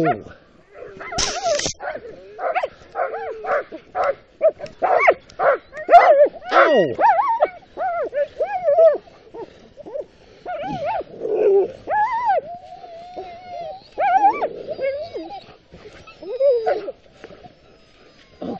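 Sled dogs in harness barking, yipping and whining in a busy run of short calls, with a longer held whine partway through.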